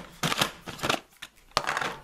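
Snap-on plastic lid being worked off a clear plastic toy tub: a run of short plastic scrapes and creaks, with a sharp click about one and a half seconds in.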